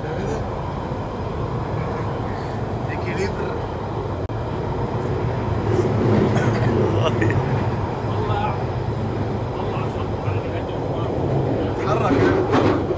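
Steady running rumble and rail noise of a London Underground train, heard from inside the carriage, getting louder about six seconds in. Faint passenger voices sit underneath.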